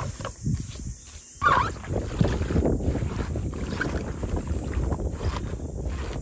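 Leafy yeolmu (young radish) greens rustling and crackling as they are tipped from a plastic colander into a plastic basin and worked by hand, with a louder burst about one and a half seconds in.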